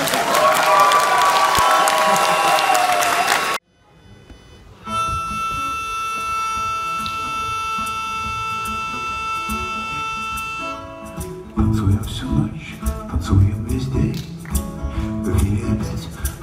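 Live rock band: loud crowd noise with a wavering melodic line that is cut off abruptly about three and a half seconds in. After a short gap a sustained chord is held for about six seconds, then drums and bass come in as the band starts the next song.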